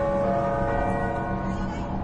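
Church bells ringing: several overlapping bell tones come in one after another and hang on, over a low rumble.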